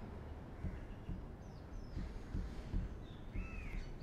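Faint bird calls against a low room rumble: a short falling chirp about a second and a half in and a longer arching call near the end, with a few soft low knocks.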